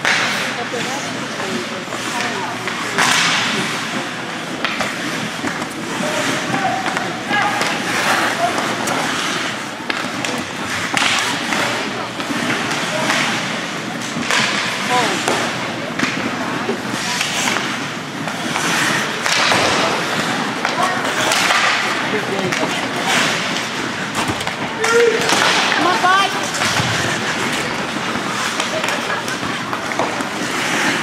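Ice hockey play in a rink: many sharp clacks and thuds of sticks, puck and boards, and skates scraping on the ice, with spectators' voices now and then.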